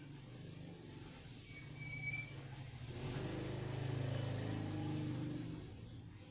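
A low motor sound that swells from about three seconds in and fades before the end, over a steady low hum, with a short high squeak about two seconds in.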